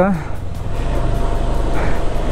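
KTM adventure motorcycle's engine running steadily at low revs, pulling the bike slowly onto a loose dirt track, with a constant rumble of engine and wind noise.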